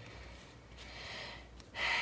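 A quick breath drawn in near the end, just before speaking, over quiet room tone with a faint hiss in the middle.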